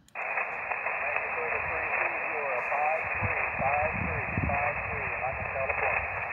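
Elecraft KX2 transceiver's speaker receiving a weak single-sideband voice signal on the 20-metre band: a steady, band-limited hiss with a faint, hard-to-follow voice under it. The hiss starts as soon as the transmit button is released. It is a weak contact, readable only at about a 3-3 signal report.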